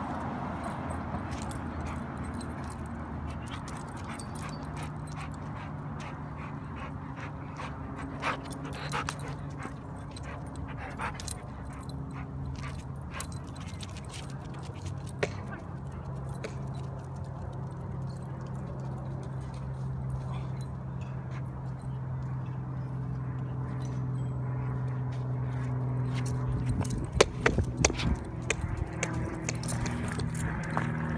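A dog whimpering at intervals, with scattered sharp taps and a steady low hum through the second half. A cluster of louder knocks comes near the end.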